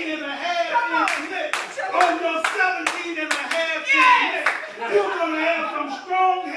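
A man preaching into a microphone, his voice rising and falling, with sharp hand claps about twice a second starting about a second in.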